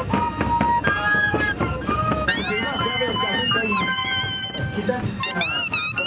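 A moseñada ensemble of Andean moseño flutes playing a tune together. High sustained horn blasts that bend upward in pitch cut in about two seconds in and again near the end.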